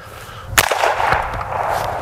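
A single suppressed shot from a Marlin Dark Series .45-70 lever-action rifle firing a 405-grain subsonic round, about half a second in, followed by a long noisy tail of echo.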